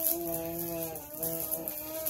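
A person humming a steady, drawn-out "mmm" at one pitch, in two long held notes with a short dip about a second in.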